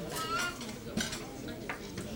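Banquet-room background: small clinks of cutlery and dishes and faint murmured voices, with a couple of sharp clicks about a second in and near the end.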